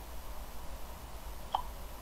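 Steady low electrical hum and hiss of background noise, with one short faint blip about one and a half seconds in.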